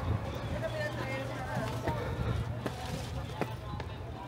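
Footsteps on concrete steps, a few scattered soft thuds, over a steady low hum and faint distant voices.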